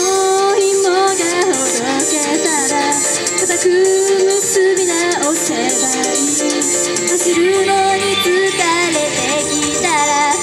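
Idol pop song: girls' voices singing into microphones over a backing track with a steady beat.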